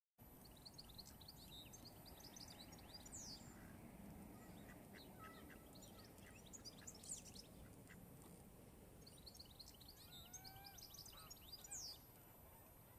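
Faint birdsong outdoors: small birds chirping and twittering in short clusters, over a low steady rumble of outdoor background noise, with a couple of lower calls near the end.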